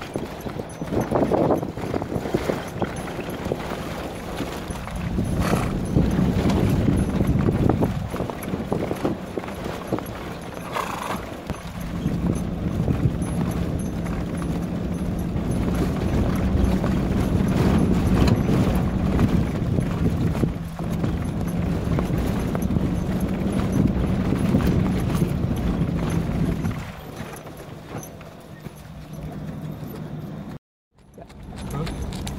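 Hoofbeats of a young Arabian colt cantering and trotting on sand under a rider. Under them runs a steady low hum and rumble, which fades near the end.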